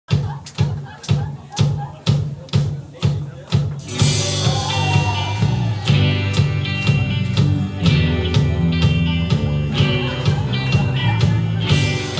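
Live rock band: a steady beat, about two hits a second, plays alone for the first four seconds, then electric guitar and the full band come in on top of it.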